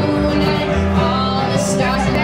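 Live acoustic country-bluegrass band playing: strummed acoustic guitar and upright bass, with a woman singing.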